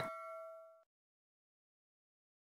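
A bell-like ding sound effect with several clear tones, ringing out and fading, then cut off abruptly under a second in, leaving silence.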